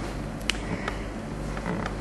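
A short pause in a quiet room with a low steady hum: a sharp click about half a second in, then a couple of fainter creaks or ticks.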